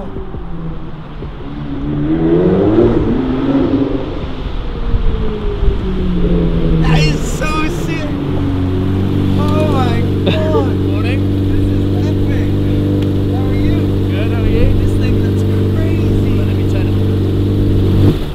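Lamborghini Murciélago V12 engine revving as the car pulls in, its pitch rising and falling, then settling into a steady idle from about halfway through.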